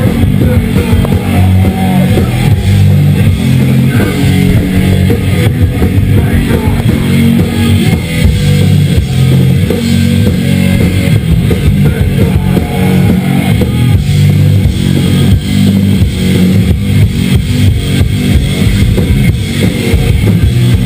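Live heavy rock band playing loud, with drum kit and electric guitar, heard from inside the crowd through a head-mounted action camera.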